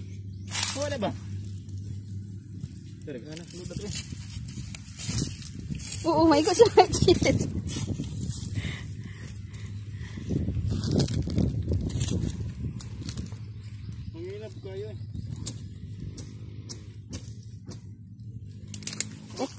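A high-pitched voice calls out briefly three times over footsteps and rustling in grass.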